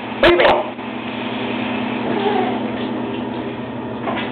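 Shower water running steadily behind the curtain, an even hiss of spray. A child's short vocal sound and a couple of sharp clicks come just after the start.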